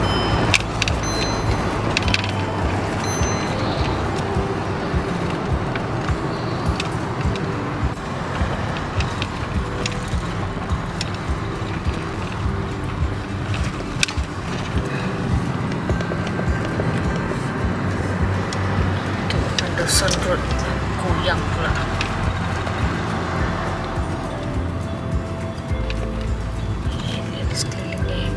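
Steady engine and road rumble of a car driving, heard from inside the cabin, with music playing over it.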